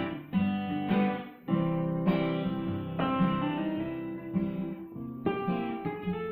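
Two acoustic guitars playing an instrumental passage together, a run of chords with sharp attacks, and no voice.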